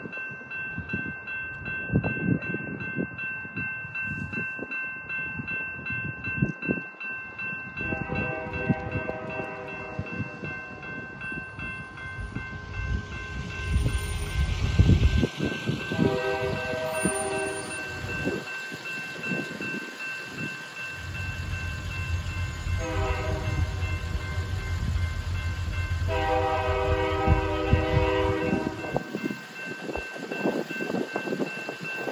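Grade-crossing signal bell ringing steadily while an approaching diesel locomotive sounds its horn in the long-long-short-long crossing pattern: long blasts about eight and sixteen seconds in, a short one about twenty-three seconds in, and a long one from about twenty-six seconds. The locomotives' engine rumble builds over the last several seconds as they near the crossing.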